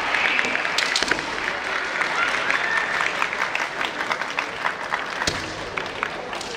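Crowd of spectators applauding in a large hall, a dense patter of clapping with faint voices or shouts held briefly over it.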